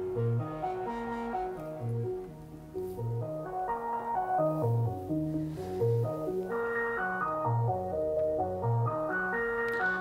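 Korg Mono/Poly analog synthesizer running an arpeggio: a quick, repeating sequence of stepped notes spread across several octaves, its VCOs set to different octaves and waveforms.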